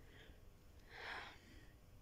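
Near silence: room tone, with one faint, short, breathy noise about a second in.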